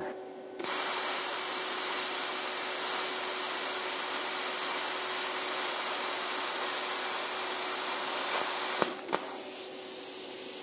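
Mr. TIG Series PowerPlasma 50 plasma cutter slicing through quarter-inch steel at 30 amps: a steady, loud hiss of the cutting arc and air jet starts about half a second in and cuts off suddenly near nine seconds with a click or two. After that a quieter air hiss continues.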